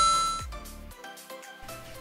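A bright chime sound effect rings out and fades away over the first half second. Quiet background music continues under it.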